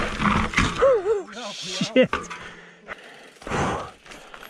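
A man's wordless groans of effort and hard breathing on the bike: a few short rising-and-falling groans in the first half, the loudest about two seconds in, then a heavy breath out near the end.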